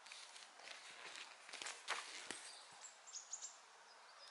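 Bare feet shuffling and stepping on foam floor mats, with the rustle of cotton training uniforms, as two people work through an aikido wrist-lock technique. A few sharper knocks, the loudest about two seconds in.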